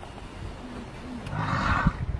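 Lions growling, with a louder rough snarl about a second and a half in.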